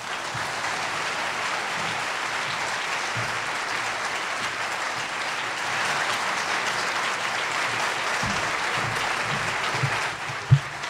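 Audience applauding, steady clapping that grows a little louder about six seconds in.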